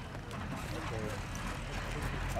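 Faint voices of a gathered group of people talking over a low, steady rumble.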